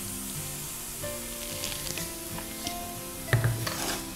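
Semolina being stirred with a wooden spatula into onions, dal and spices frying in oil in a pan, with a soft steady sizzle and a brief knock of the spatula against the pan near the end. Quiet background music with held notes plays underneath.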